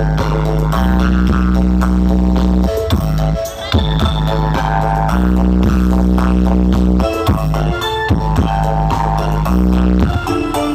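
Loud dance music blasting from the ME Audio truck-mounted speaker stack (a Javanese 'sound horeg' rig). Long held, very deep bass notes of a second or two each are broken by short gaps, under busy higher melody and beat.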